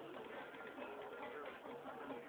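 Crowd chatter from a dinner party: many voices talking at once, overlapping into a steady hubbub with no single speaker standing out.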